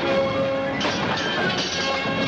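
Orchestral film score playing, with a sharp crash about a second in and another hit shortly after, from the fight.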